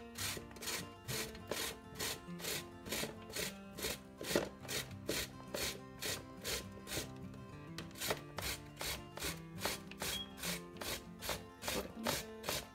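Cucumber being grated on a metal box grater, a rasping stroke about three times a second.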